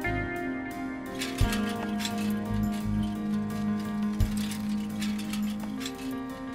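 Background music score: a held low note under a series of higher plucked notes, with a few soft low thuds.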